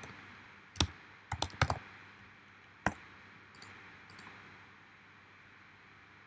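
Computer keyboard keys being tapped and mouse clicks: single sharp taps about a second in, a quick cluster of three just after, one more near three seconds, then a few fainter ones.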